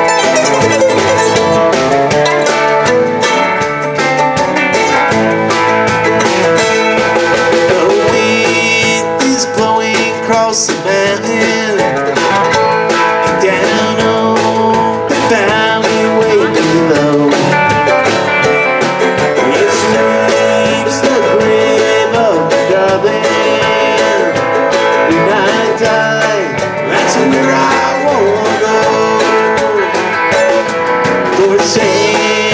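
Live bluegrass band playing: electric guitar, mandolin, upright bass and drum kit.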